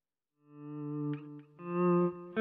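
Electric guitar played through the NUX B-8 wireless system: a sustained note swells in from silence about half a second in, and a louder new chord rings out near the end.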